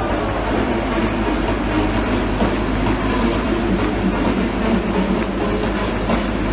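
Football crowd in a stadium cheering and chanting, a steady dense wall of voices, with music underneath.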